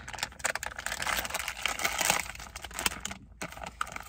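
A plastic blind bag being torn open and crinkled by hand: a dense run of small crackles that breaks off about three seconds in.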